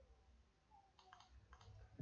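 Near silence with a few faint computer-mouse clicks, a pair about a second in and one more shortly after.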